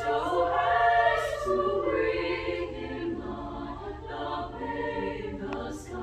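High school madrigal choir of mixed voices singing a Christmas carol in harmony, holding long notes that move from chord to chord, with crisp 's' consonants around a second in and near the end.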